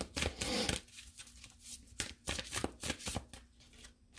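An oracle card deck being shuffled and handled by hand. There is a dense rustle of cards in the first second, then scattered light flicks and clicks as cards are cut and drawn.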